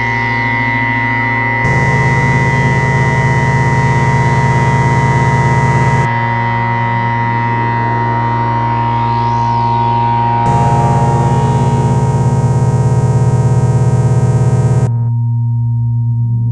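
Dark ambient synthesizer music: sustained, layered drones. A rough, noisy, fuller layer comes in twice, about two seconds in and again about ten seconds in, each time for about four seconds and cutting off suddenly.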